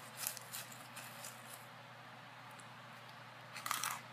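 Chewing and crunching of freeze-dried astronaut ice cream close to the microphone: a few soft crunches in the first second and a half, then a louder burst of crackling near the end.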